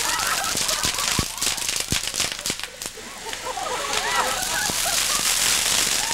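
Fireworks burning in a fire: a steady hissing spray with sharp pops and crackles. Onlookers laugh and hoot at the start and again from about four seconds in.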